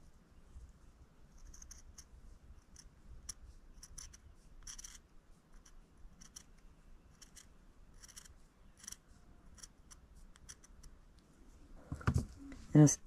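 Small sharp scissors snipping through ultrasuede backing fabric: many short, faint snips at an irregular pace as the backing is trimmed close around a bead-embroidered piece.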